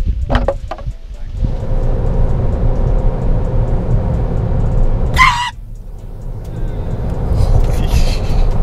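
Steady low road and engine rumble inside a moving Toyota's cabin. About five seconds in, a sudden brief burst that is loud, after which the rumble drops for about a second before returning.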